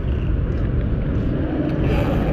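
Steady street traffic noise: a low, even rumble with no distinct events.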